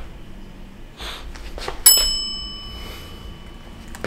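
A single bright bell-like ding about two seconds in that rings on and fades over about two seconds, preceded by a couple of short soft rustling noises.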